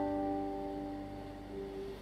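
Julian Dammann nylon-string classical guitar, a chord ringing out and slowly fading, with one soft note plucked about a second and a half in.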